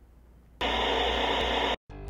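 A burst of static-like hiss, about a second long, starting suddenly after a moment of quiet room tone and cutting off abruptly: an edit noise where the programme ends and a promo is spliced in.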